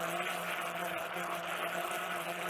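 Countertop blender running steadily, blending a thin liquid cake batter of eggs, milk, condensed milk, flour and sugar: an even motor hum with the whirring churn of the liquid.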